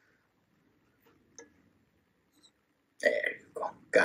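Near silence with one faint click about a second and a half in, then a short, loud vocal sound from a man for the last second.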